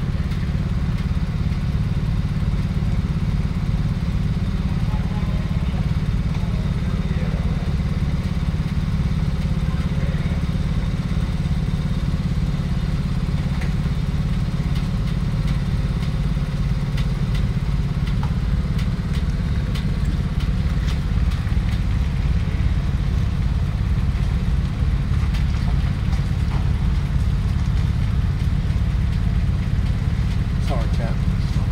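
Large diesel engine of a heavy-haulage abnormal-load rig running steadily at low revs as the multi-axle trailer creeps forward, with a few faint clicks and clatter.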